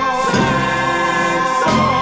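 Closing bars of a song: a choir holds a long sustained chord over instrumental accompaniment, with two strong beats, one about a third of a second in and one near the end.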